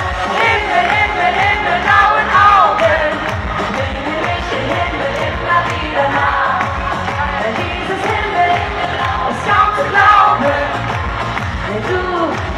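Live Schlager pop song through a stage sound system: a steady dance beat with sung vocals, the singing strongest near the start and again around ten seconds in.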